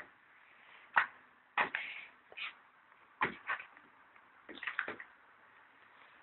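Plastic housing and parts of a Panasonic landline telephone being handled and fitted back together during reassembly: a series of irregular short clicks and knocks.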